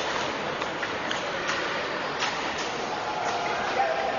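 Table tennis ball knocking back and forth between bats and table in a rally, sharp irregular clicks about two a second, over a steady hiss of hall noise. The rally ends near the end, when a short pitched sound is heard.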